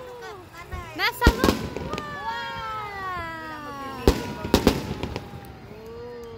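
Aerial fireworks going off: a pair of sharp bangs about a second in, then three more between four and five seconds in, with long falling whistle-like tones sounding between the bangs.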